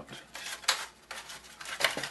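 Handling noise as earphone cables are pulled and worked free of a foam packaging insert: soft rustling and rubbing with a few short, sharp scrapes, the strongest about two-thirds of a second in and another near the end.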